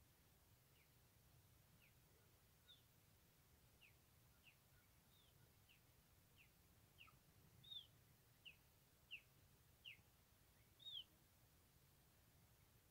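A bird calling in short, falling chirps, one roughly every two-thirds of a second, faint at first and louder in the second half.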